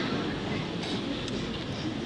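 Low, steady murmur of a lecture-hall audience in a pause between speakers, an even hum of room noise without clear words.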